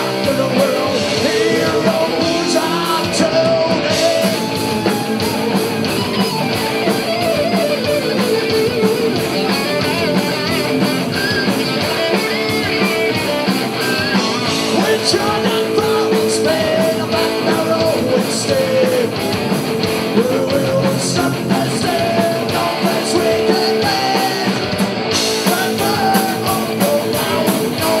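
Rock band playing live at full volume: distorted electric guitars and drums, with a melodic line bending in pitch over the top.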